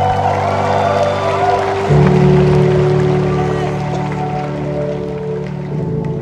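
Live worship band's instrumental interlude: sustained keyboard chords held steady, shifting to a new, louder chord about two seconds in, with scattered crowd voices over it in a large arena.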